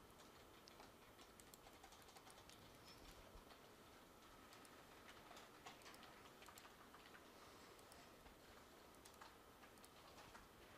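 Near silence with faint, scattered clicks of a computer mouse.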